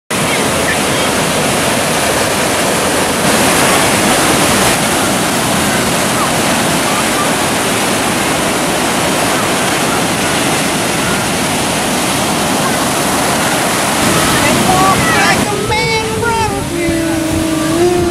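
Ocean surf breaking and washing in, a steady loud rush of white water. In the last few seconds a voice calls out over it, with one drawn-out held note.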